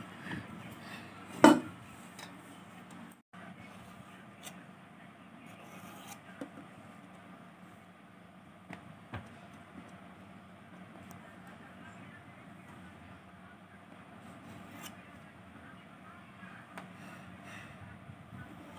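Quiet room tone with faint handling sounds as a thin sheet of rolled dough is moved and smoothed on a steel plate. One loud, short knock comes about a second and a half in, and a few faint clicks follow.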